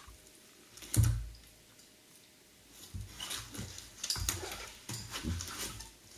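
Thick gunge squelching in a bathtub as a body and a trainer move through it: a heavy thump about a second in, then a run of short, sticky squelches and clicks.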